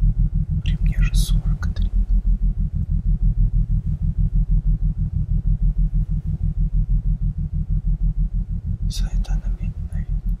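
A low, rapidly pulsing drone of about seven throbs a second, with a man's whispered words about a second in and again near the end.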